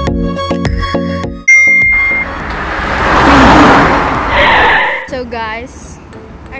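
Background music for the first second and a half, then street sound: a short, loud high beep, followed by passing traffic that swells and fades over about two seconds, and a brief voice near the end.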